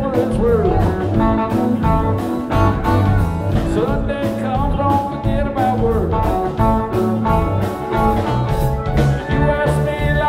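Live rock band playing: electric guitar, keyboards, bass and drums, with a steady beat and gliding lead lines throughout.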